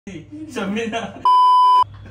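A loud, steady 1 kHz censor bleep lasting about half a second, cutting in sharply after a few words of speech and masking a swear word.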